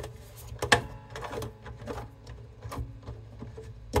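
Irregular clicks and knocks of fingers working inside an overhead travel acoustic guitar's soundhole, turning the coarse-threaded fastener that holds its detachable neck on. The sharpest knock comes under a second in, another at the very end.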